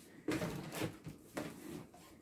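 Plastic zip-top bags and a plastic storage container rustling as they are handled and moved aside, in several short bursts.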